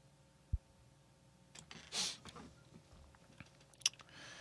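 Quiet room tone at a computer desk: a soft low thump about half a second in, a faint breath around two seconds, and a couple of sharp clicks near the end.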